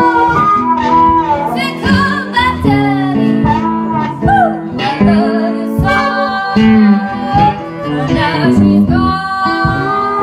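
Blues band playing live: guitar with a singing line that bends between notes.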